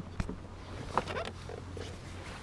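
A dog making faint whimpering noises, with a sharp click shortly after the start and a steady low hum underneath.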